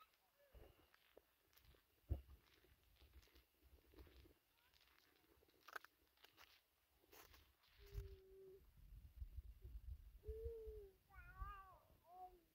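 Faint meowing of a cat: a short, steady call about eight seconds in, then a couple of wavering calls near the end, over a faint low rumble.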